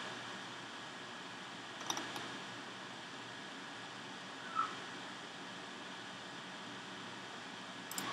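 Computer mouse clicking a few times over a steady low hiss: one click about two seconds in and another at the very end. A short faint chirp comes about halfway through.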